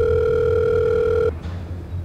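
Telephone ringing tone heard over the line while a call is placed: one steady electronic tone that cuts off suddenly a little over a second in, as the call is picked up.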